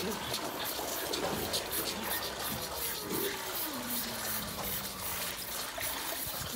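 Milk being poured from a bucket into a plastic multi-teat calf feeder, a continuous splashing pour. About three seconds in, a calf gives one long bawl that falls in pitch and then holds.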